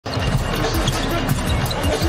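A basketball bouncing repeatedly on a hardwood court during live play, over steady arena crowd noise.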